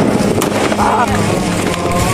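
Music from the song, with held instrumental tones and a short wavering sung note about a second in.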